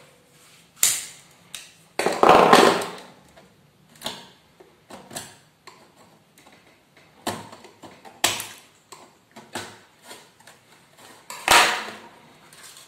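Irregular clicks, taps and rustling of small parts and a small metal tool being handled against the plastic case of a cassette player, with a longer scraping rustle a couple of seconds in and a sharp knock near the end.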